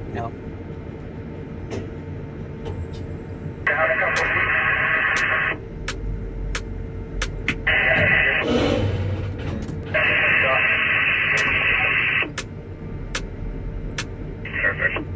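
Two-way radio transmissions from the ground crew heard in a tower crane cab: three short bursts of a thin, clipped voice through the radio speaker, about four, eight and ten seconds in, with a burst of hiss after the second. They sit over a steady low cab hum.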